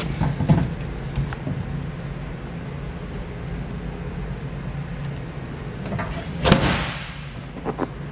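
Fiberglass bow-seat storage hatch on a boat being handled: a light knock about half a second in, then a louder thump with a short scraping rush about six and a half seconds in, over a steady low hum.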